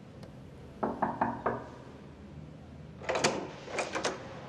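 Knuckles knocking on a wooden front door, four quick raps about a second in. Near the end comes a louder clatter as the door is unlatched and opened.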